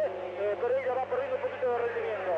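A man's voice in a radio race commentary, continuing unbroken, over a steady low hum.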